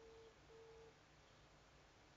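Faint telephone ringback tone: one double ring, two short steady beeps close together at the same pitch. This is the New Zealand double-ring pattern of an outgoing call ringing at the other end.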